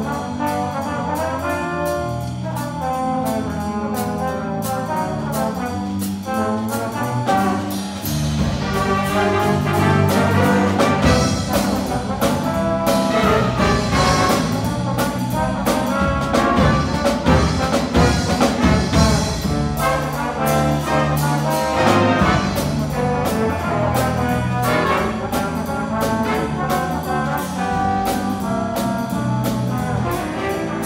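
High school jazz big band playing a jazz tune with trombones to the fore over a steady beat, and the full ensemble getting louder about eight seconds in.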